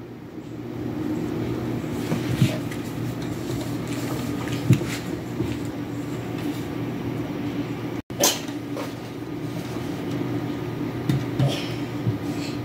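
A steady low hum runs throughout, with a few short knocks about two and a half, five and eight seconds in.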